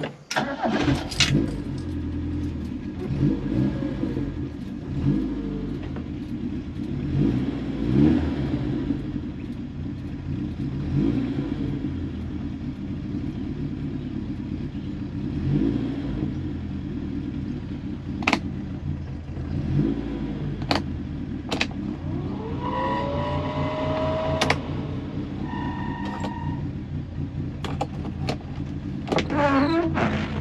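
1968 BMW 1600's 1.6-litre four-cylinder engine, heard from inside the cabin, catching right at the start and then idling, blipped with the throttle several times over the first sixteen seconds. About 23 seconds in there is a short rising whine, and a few sharp clicks fall in the later part.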